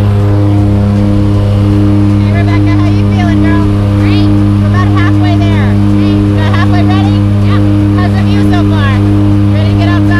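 Turboprop aircraft engine and propeller droning steadily, heard inside the cabin of a jump plane climbing to altitude.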